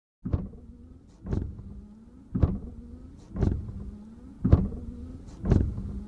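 Channel intro sound effects: a series of deep, sharp hits, about one a second, each fading quickly, over a faint steady hum.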